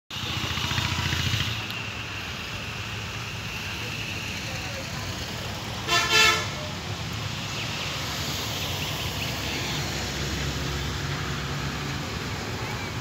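A train horn sounds a short double toot about six seconds in, as the train approaches the station. A steady low rumble of outdoor background noise lies under it.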